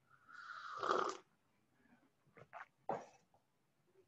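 A single breathy noise from a person, about a second long and loudest near its end, followed by a few faint clicks.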